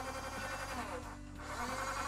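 Toy-grade Ao Hai RC forklift's small electric motor tilting the mast, under the toy's built-in electronic sound effect: steady tinny tones that step to a new pitch about every second.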